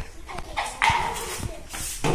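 Young Indian spectacled cobra hissing: a loud rushing hiss about a second in, then a shorter, higher one near the end.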